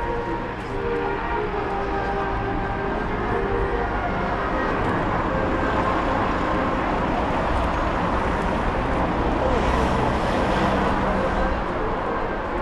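Road traffic passing close by: a car goes by, its tyre and engine noise swelling to loudest about ten seconds in, then fading. Low voices can be heard under it.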